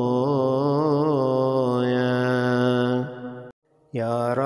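A solo voice chanting one long held note in liturgical psalm chant, wavering at first and then steadier, which fades out about three seconds in. After a brief silence the chant starts again at the very end.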